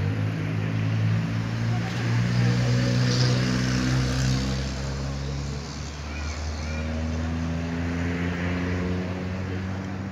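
A heavy diesel engine running steadily and unseen, with a low, pitched hum whose tone shifts about halfway through. Faint bird chirps sound over it.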